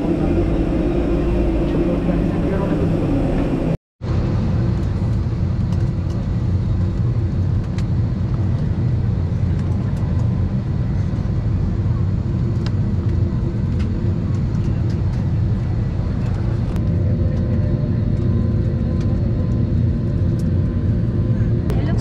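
Steady low rumble and hum inside a parked airliner's cabin during boarding, with the air conditioning running, faint passenger chatter and a few small clicks. The sound cuts out briefly about four seconds in.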